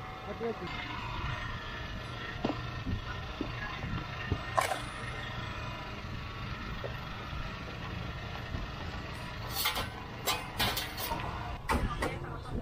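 Open-air street market ambience: indistinct background voices over a steady low rumble, with a few short sharp clacks, once about halfway through and several near the end.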